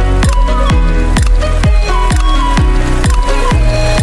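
Electronic background music with a steady beat of deep kick drums, about two a second, each a bass thump that drops in pitch, under sustained synth notes.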